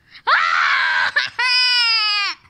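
A child screaming: a rough shriek lasting under a second, then a long, high, steady scream held to the end.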